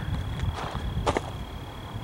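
Wind rumbling on the camcorder microphone, with a faint steady high whine and a brief click about a second in.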